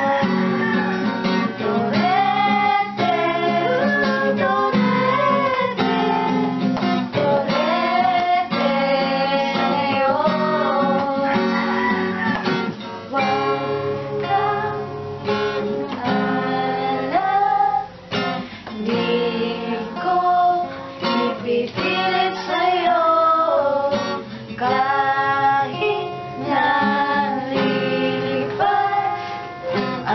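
An acoustic guitar strummed as accompaniment while several women's voices sing together.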